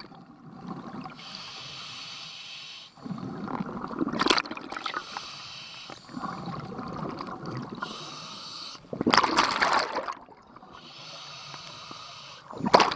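A scuba diver breathing underwater through a regulator: a steady hiss on each inhalation, then a loud gush of exhaled bubbles, twice, about three and nine seconds in.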